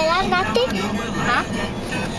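Steady low road and engine noise inside a moving car's cabin, with a young girl's voice over it in the first half second and again briefly about a second and a half in.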